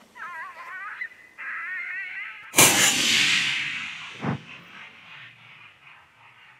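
Two wavering, high-pitched calls, then a single loud rifle shot from a suppressed AR-style rifle about two and a half seconds in, its echo fading over a couple of seconds. About a second and a half after the shot comes a second, duller thump.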